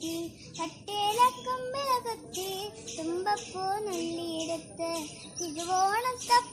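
A young girl singing a Malayalam song solo, in flowing melodic phrases with a brief breath pause just under a second in.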